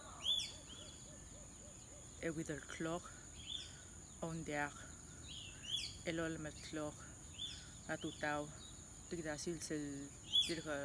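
Birds calling outdoors with short chirps that slide down in pitch, one every second or two, over a steady high-pitched insect drone.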